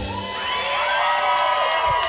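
Audience cheering and whooping, several voices holding long, wavering yells over each other, as the band's last chord stops right at the start.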